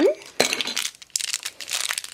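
Small crinkly plastic blind-bag wrapper being crumpled and torn open by hand, a run of irregular crackles starting about half a second in.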